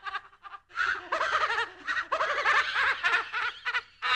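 A spooky horror-style laugh sound effect: after a short pause, a voice laughs in runs of quick repeated 'ha' bursts from about a second in, with a brief break midway.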